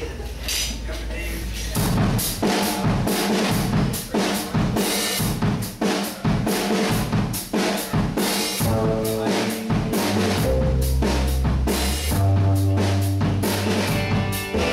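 Live rock band starting a song: the drum kit comes in loud about two seconds in with a busy beat of bass drum and snare, under electric guitar and electric bass. Held bass and guitar notes come forward in the second half.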